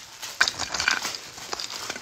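Christmas ornament balls rustling and clicking against one another as a hand picks through a box of them, with a couple of sharper clicks about half a second and a second and a half in.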